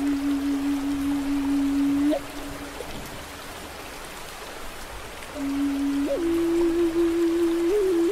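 Native American flute playing long, held low notes. It breaks off about two seconds in after a quick upward flick, falls silent for about three seconds, then comes back, slides up to a slightly higher note and adds a small ornament near the end. Under it runs a steady hiss of rain and water.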